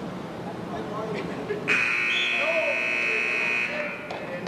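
Scoreboard buzzer in a gym sounding one steady, high buzz for about two seconds, starting abruptly a little under two seconds in, over crowd voices. It marks the end of a wrestling period.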